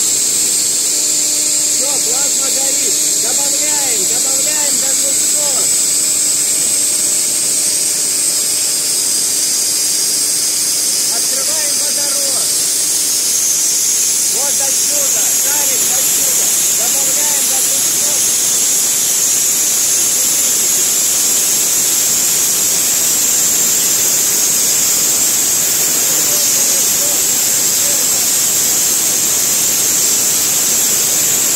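Plasma spray gun running after ignition: a loud, steady hiss of the plasma jet.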